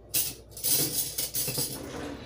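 Metal kitchen utensils clinking and rattling in a drawer's cutlery organizer as a hand rummages through them: a sharp clatter at the start, then a run of irregular clinks.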